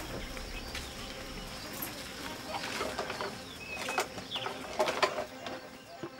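Birds calling, short scattered calls that come more often in the second half, over faint steady background noise.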